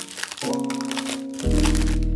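Plastic crinkling as a plastic sleeve and cellophane-wrapped packaging are handled, over soft instrumental background music.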